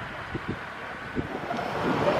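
Wind buffeting the microphone outdoors, with a few short low thumps over a steady background rush.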